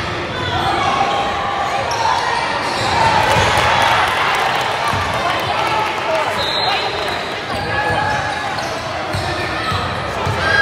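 Spectators and players chattering in a gym that echoes, with a basketball bouncing on the hardwood court as a player dribbles at the free-throw line.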